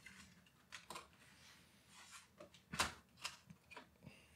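Faint clicks and light scrapes of a 12-inch PowerBook G4's aluminium top case being worked free and lifted off its chassis. There are about half a dozen separate clicks, the loudest about three quarters of the way through.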